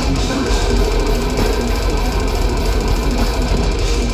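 Death metal band playing live: distorted electric guitars over fast, dense drumming, loud and continuous, with a heavy low end.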